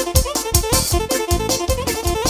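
Band music: a keyboard melody of quick notes over a fast, steady drum beat.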